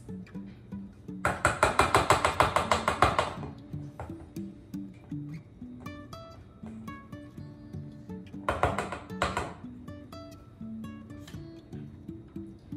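A silicone spatula scraping around a metal mixing bowl in two bursts of rapid strokes. The first starts about a second in and lasts about two seconds; a shorter one comes past the middle. Acoustic guitar music plays underneath throughout.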